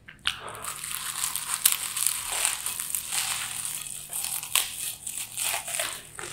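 Crunchy corn puffs and chips being crushed close to the microphone as a big handful is eaten: dense, continuous crackling full of sharp snaps, starting just after a quiet moment.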